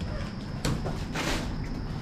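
A parcel being handled and set down on a tiled floor: a short knock about two-thirds of a second in, then a brief rustle of packaging.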